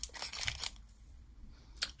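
Silver foil wrapper of a soy wax melt bar crinkling as gloved hands open and handle it, fading to quieter handling, with one short click near the end.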